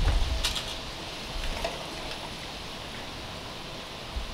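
A metal jar lifter clinks once against a hot canning jar inside an open pressure canner about half a second in, with a fainter tick a second later, over a steady background hiss.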